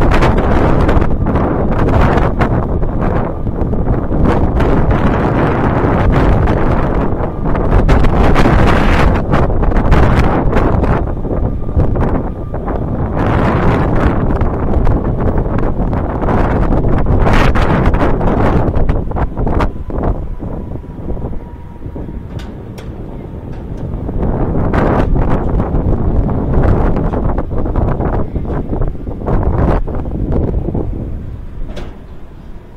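Wind rushing over the microphone of a camera riding on a high tower swing ride as it circles. The rushing is loud and comes in waves, swelling and easing off, and drops to its quietest about two-thirds of the way through.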